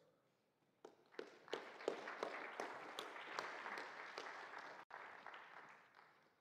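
Audience applauding: a few claps about a second in build into steady applause, which fades out near the end.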